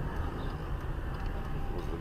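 Car engine and road noise heard from inside the cabin as the car creeps along at low speed: a steady low hum.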